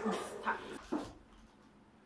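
A pet dog giving a few short yips or whimpers, three quick sounds in the first second, then quiet.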